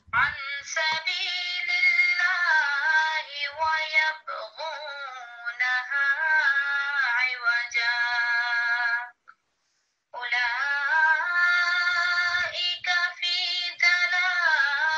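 Recorded Quran recitation in tarteel style: a single voice chanting melodically, with long held notes that waver and bend. It breaks off for about a second, some nine seconds in, then carries on.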